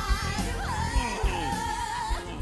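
A singer with a rock band in a live stage-musical recording. The voice slides through a few pitches, then holds a long high note with vibrato from about a second in, over the band and drum hits.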